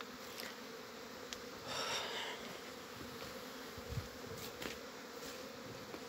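Honeybees buzzing around an apiary's hives, a steady hum, with a brief rustle about two seconds in.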